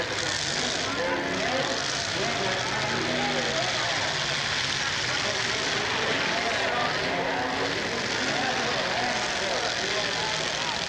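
Demolition derby cars' engines running in a steady din, with people in the crowd talking over it.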